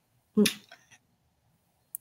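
A woman's voice saying one short word, followed by dead silence on the line and a brief sharp click just before the end.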